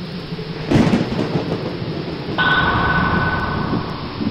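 Thunderstorm sound effect: steady rain-like hiss, with a loud crack of thunder a little under a second in. About two and a half seconds in, a brighter hiss with a steady high tone joins.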